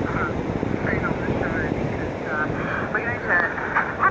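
Radio Australia's English shortwave broadcast on 9580 kHz coming from the small speaker of a Tecsun PL-660 portable receiver: a thin, faint voice half lost in static, over the steady rush of surf.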